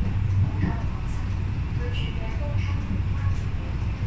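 Inside an MLR electric multiple unit train running between stations: a steady low rumble of the car under way, with faint voices over it.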